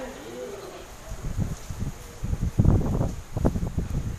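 Footsteps and shuffling on a tiled floor: an irregular run of dull thumps starting about a second in, loudest a little past the middle.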